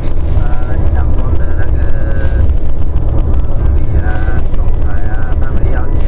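Steady low rumble of a car's engine and tyres heard inside the moving car's cabin, under a man talking.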